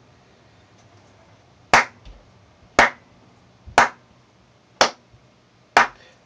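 One person clapping slowly: five single hand claps about a second apart, the first almost two seconds in.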